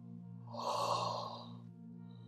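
A woman's breathy sigh starting about half a second in and lasting about a second, over a steady, low ambient music drone.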